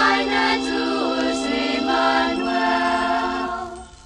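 Group of voices singing the closing held notes of a Chamorro Christmas carol, played from a 1976 vinyl record. The singing fades out about three and a half seconds in, leaving faint record-surface crackle.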